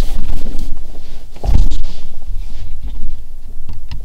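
Low rumble inside a Ford car's cabin as the car moves off, swelling about one and a half seconds in, with a few light clicks near the end.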